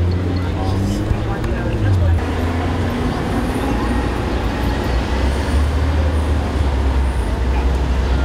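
City street traffic noise with a vehicle engine running as a low, steady rumble, and people talking in the background.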